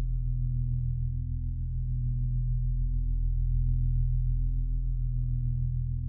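A steady low drone of held tones that does not change, with no beat or melody: an ambient music bed.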